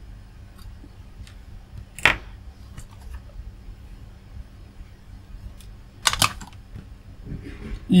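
A few light clicks and knocks from handling work on the bench, one sharp knock about two seconds in and a quick double knock about six seconds in, over a steady low hum.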